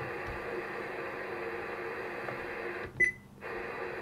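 Whistler TRX-2 scanner's speaker putting out steady radio static with the squelch set too low to shut it off. About three seconds in, a short high keypress beep, then a brief cut-out before the hiss returns.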